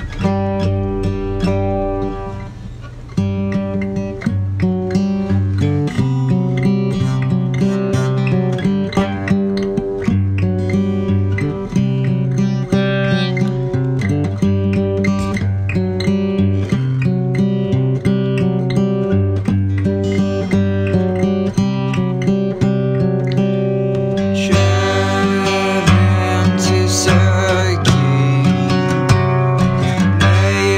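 Acoustic guitar strumming chords in a steady rhythm: the instrumental opening of a song, before any singing. The sound grows brighter about 25 seconds in.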